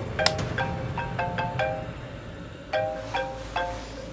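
Smartphone ringing with a marimba-style ringtone: short runs of bright mallet notes repeating with brief pauses. A sharp click sounds just after the start.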